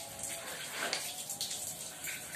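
Water running from a hose into a plastic bucket, a steady faint rush of water.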